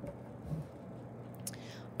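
Quiet room tone with faint strokes of a felt-tip pen on paper, and a short breath just before speech resumes at the end.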